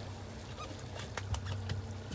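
Boat's outboard motor running steadily with a low hum, with scattered faint clicks and knocks over it.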